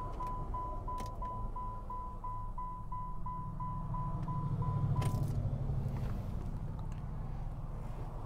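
Car's electronic warning chime beeping repeatedly in a steady single tone, about three beeps a second, stopping with a click about five seconds in. A low steady hum runs underneath.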